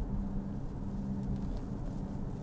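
Steady low drone of engine and tyre noise heard from inside the cabin of a moving car.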